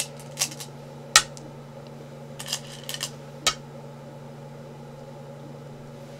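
Go stones clacking: a hand rummaging among the stones in the bowl and setting stones down on the wooden board, giving about half a dozen sharp clicks, the loudest about a second in. A steady low hum runs underneath.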